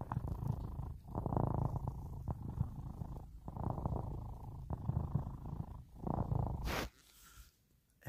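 Domestic cat purring close to the microphone, a low rumble in long pulses with short breaks between breaths; the purring stops about a second before the end.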